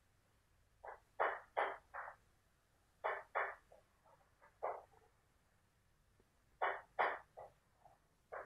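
Short animal calls in quick clusters of two to four, about a dozen in all, with gaps of a second or two between clusters.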